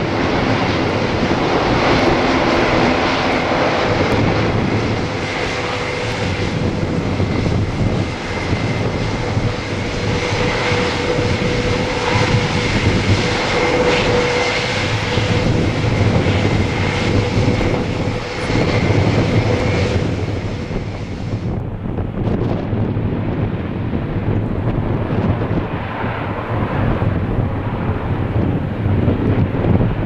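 Airbus A400M's four TP400 turboprop engines running as the aircraft taxis: a loud, steady propeller drone with a high whine over it. About two-thirds of the way through the sound turns abruptly duller, losing its top end.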